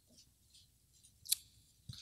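Pages of a Bible being leafed through at a pulpit: faint paper rustling with one short, sharp flick of a page just past the middle.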